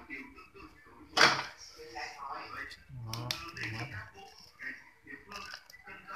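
Indistinct voices in the background, with a sharp knock about a second in and a few lighter clicks.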